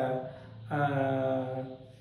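A man's voice in two drawn-out phrases held at a fairly steady pitch, with a short break about half a second in and a trailing off near the end.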